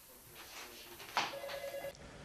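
A faint electronic telephone ring, one steady beeping tone, starts a little over a second in and is cut off abruptly near the end, over quiet office room tone.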